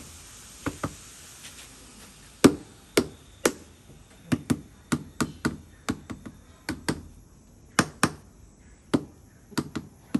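Rubber mallet tapping a large ceramic tile to bed it into mortar on a concrete wall: about twenty short knocks, some single, some in quick pairs. The hardest blow comes about two and a half seconds in.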